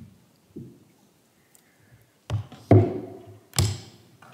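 Knocks and thumps on a wooden pulpit picked up close by its microphone as someone steps up and handles it: a few soft thumps, then three loud sharp knocks in the second half, the middle one loudest.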